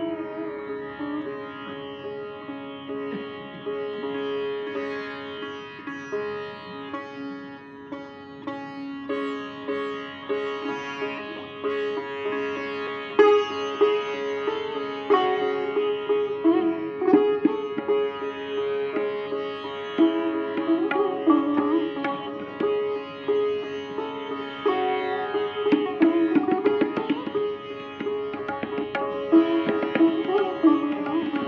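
Sitar playing raga Bhairavi: plucked melody notes with sliding bends in pitch, over a steady ringing drone.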